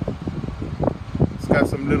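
A man's voice speaking in short fragments over a steady low rumble of wind on the microphone.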